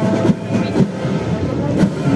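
Military brass band playing, with held low brass notes and sharp strokes mixed into a rhythmic clatter.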